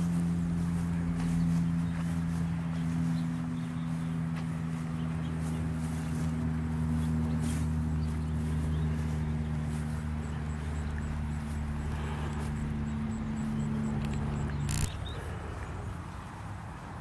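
A steady low mechanical hum on a few even pitches, like a motor running at constant speed, that cuts off suddenly with a click near the end.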